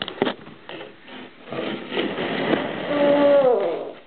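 Plastic clothespins clicking and knocking as they are handled at a plastic bowl, with two sharp clicks at the start. About three seconds in comes a short held vocal sound that drops in pitch as it ends.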